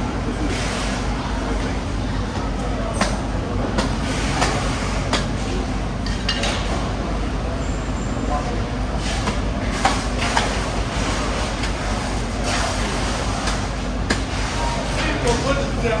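Scattered sharp knocks and clicks of a large knife being worked into the head of a whole bluefin tuna, over a steady low hum.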